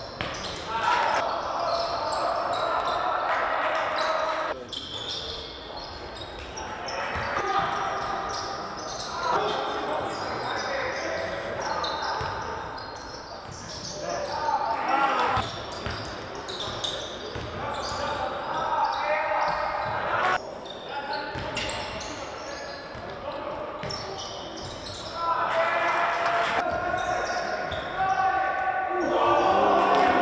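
Live sound of a basketball game in a large, nearly empty hall: the ball bouncing on the hardwood court, with players' and coaches' voices calling out and echoing.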